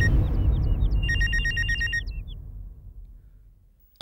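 Mobile phone ringtone: high electronic beeps and a quick warbling trill that stop about two seconds in. A low rumble underneath fades away.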